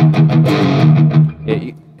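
Electric guitar with EMG pickups played through a KHDK Ghoul Screamer overdrive pedal, engaged with the drive at noon: a low note picked several times and held with a thick overdriven tone, dying away about a second and a half in.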